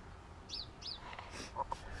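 A small bird chirping: two short high chirps about a third of a second apart, about half a second in, over faint outdoor background noise.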